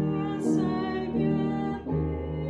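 A hymn tune played on a digital piano, in full sustained chords that change about every half second.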